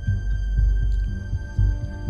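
Suspense background music: a low, throbbing pulse like a heartbeat under a steady high held note.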